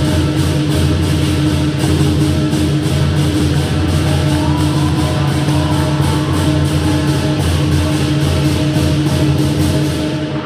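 Lion dance drum and cymbal ensemble playing loud and without a break, the cymbals crashing on the beat about three times a second over the low boom of the big drum.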